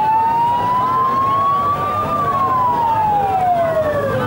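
A vehicle siren wailing slowly: its pitch climbs for about two seconds to a peak, then falls away over the next two seconds.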